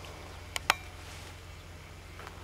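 Two short sharp clicks about half a second in, a fraction of a second apart, over a steady low hum.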